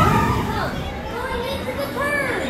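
Children riding a passing family roller coaster train shouting and calling out, growing slightly quieter as the train moves away.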